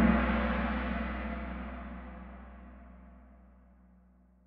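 Kahoot quiz game's gong sound effect for the answer reveal, a single struck ring with low tones that fades slowly away.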